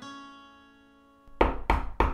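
Acoustic guitar chord ringing out and dying away, then a few sharp knocks on a wooden door about one and a half seconds in.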